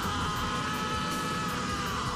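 An anime character's long drawn-out scream from the episode's soundtrack, held on one pitch that sinks slightly before fading near the end, over a music bed.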